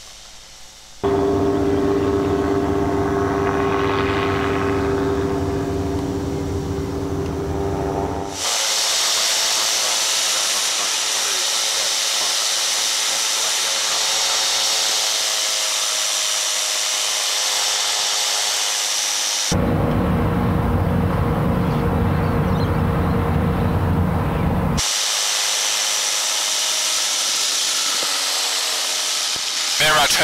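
Flexwing microlight trike in flight: its engine and pusher propeller drone steadily with a low, even pitch, switching about 8 seconds in to a high rushing wind noise. The engine drone comes back near the 20-second mark for about five seconds, then gives way to the rushing wind again.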